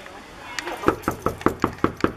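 Knocking on a door: a run of about eight quick raps that begins about half a second in and speeds up slightly toward the end.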